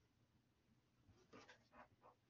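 Near silence: room tone, with a few faint short clicks about two-thirds of the way through.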